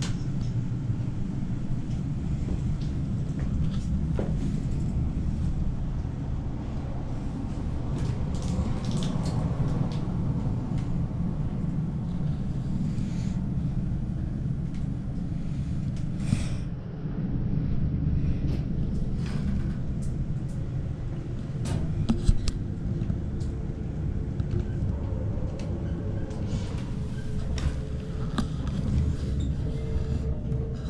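High-speed tower lift car travelling down its shaft: a steady low rumble with rushing air, and scattered light clicks and knocks from the car. A faint steady hum comes in near the end.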